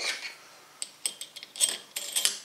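Long steel screws clinking against each other and the bench as they are picked up: several light metallic clicks, the brightest about one and a half seconds in.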